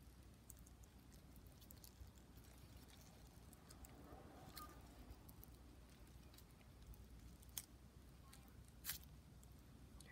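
Near silence, with a few faint clicks and rustles as hands twist and pull an offset from the base of a zebra succulent (Haworthia fasciata).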